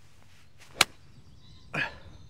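A wedge striking a golf ball from the rough: a faint swish of the downswing, then one sharp click of the clubface on the ball just under a second in. About a second later comes a brief rushing sound.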